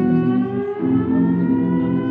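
Violin playing one long bowed note that slides slowly upward, over live-looped layers of lower sustained notes that change in steps about every second.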